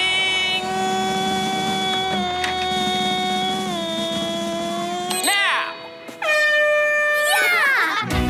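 A horn blast signalling the start of the contest, held for about five seconds with its pitch sagging slightly near the end. A second, shorter blast follows about a second later.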